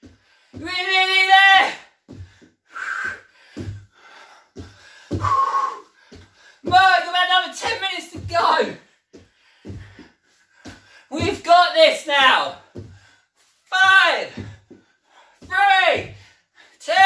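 A man's wordless vocal sounds of effort during a high-intensity cardio drill: about six groans and grunts of up to a second each, some falling in pitch. Between them come soft thuds of bare feet on a wooden floor.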